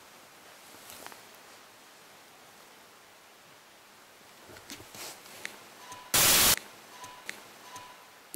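Faint, distant metallic knocks, a few over about a second, then a sudden loud burst of static-like hiss lasting under half a second, followed by a faint steady high tone.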